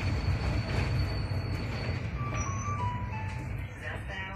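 SOR NB 18 City bus running on the road, heard from inside as a steady low rumble. Just past halfway, an electronic chime of about four notes steps downward in pitch: the bus's next-stop announcement chime.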